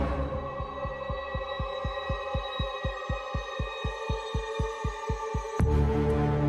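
Suspense soundtrack cue: a low throbbing pulse, like a heartbeat, about five times a second under steady high eerie tones. It ends in a sudden sharp hit near the end.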